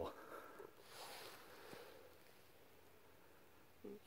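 Near silence: quiet outdoor room tone, with a faint soft rustle about a second in.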